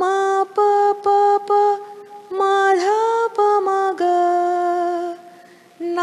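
A woman sings a sargam phrase from Raga Yaman unaccompanied, one note at a time with the sharp Ma. There are several short notes, then longer held ones, with a dip and upward slide about three seconds in.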